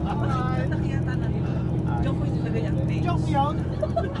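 Tour coach engine and road noise heard from inside the moving coach, a steady low drone, with faint voices of passengers over it.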